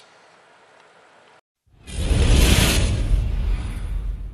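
Outro sound effect for the Lumenier logo card: after a second and a half of faint room tone and a brief drop to silence, a loud, noisy rush with deep bass starts and carries on.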